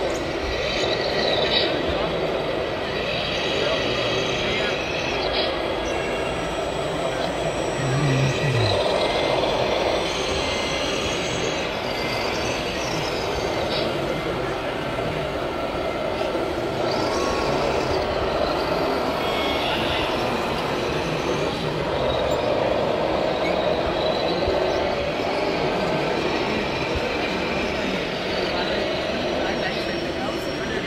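A radio-controlled scale model tractor runs steadily while pulling a loaded tipper trailer through soil, with people talking in the background.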